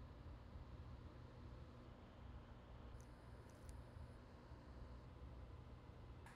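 Near silence: faint low room hum, with a few faint ticks about three seconds in.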